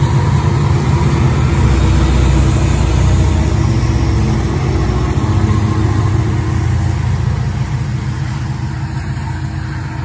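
Union Pacific diesel locomotives passing close by in a freight train: a loud, deep engine drone mixed with wheel and rail noise, strongest a few seconds in and slowly fading toward the end.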